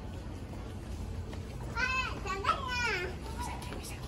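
A young child's high-pitched voice: a couple of short vocal sounds that arch up and down in pitch about two seconds in, over a steady low background hum.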